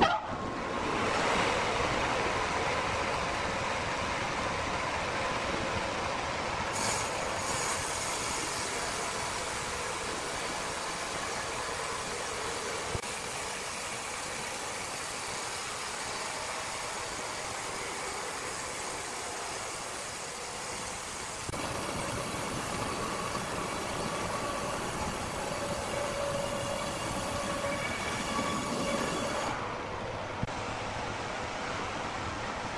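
Horizontal band sawmill running with its blade cutting lengthwise through a large log: a steady mechanical rasp and hum with a faint steady tone. The sound changes abruptly twice, about a quarter of the way in and again past two-thirds.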